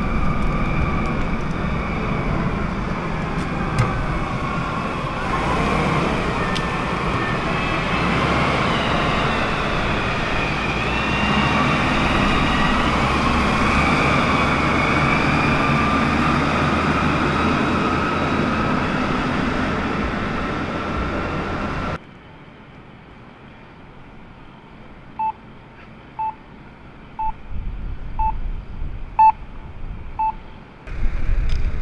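Propane forklift engines running as they carry concrete traffic barriers, with a high whine that slowly wavers in pitch over the rumble. About 22 seconds in, the sound cuts to a much quieter street with short beeps about once a second.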